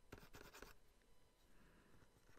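Faint scratching of a stylus drawing quick sketch strokes on a Wacom pen tablet. There is a rapid run of short strokes in the first second, then lighter, slower scratching.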